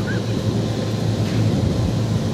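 Yamaha 242 Limited jet boat's engines running at idle, a steady low drone, with wind rumbling on the microphone.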